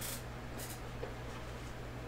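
Quiet room tone with a steady low hum, and two faint, brief rustles in the first second, from hands handling a trading card.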